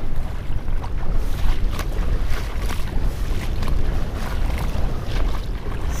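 Wind buffeting the microphone, a steady low rumble, with scattered short clicks over it.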